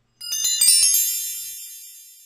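Chime sound effect: a quick shimmering cascade of high bell-like notes, then a ringing fade lasting over a second.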